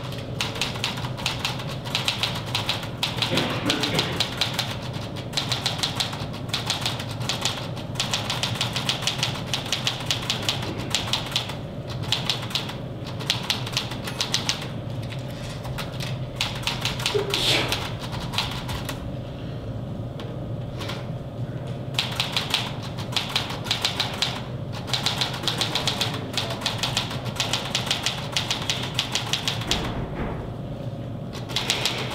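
Fast typing on a keyboard, keys clicking in long continuous runs broken by a few short pauses, the longest about two-thirds of the way through, over a steady low room hum.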